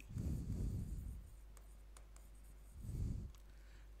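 Pen writing on an interactive whiteboard: a spell of strokes over the first second or so and a shorter one near the end, with faint ticks between.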